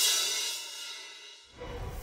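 Television channel ident music sting: a bright, cymbal-like whoosh that peaks at the start and fades away, then a deep low hit about a second and a half in.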